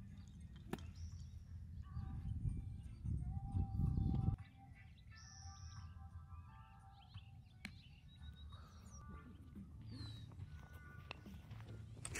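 Birds calling and chirping across a quiet open background, over a low wind rumble on the microphone that cuts off about four seconds in. A single sharp click comes just under a second in.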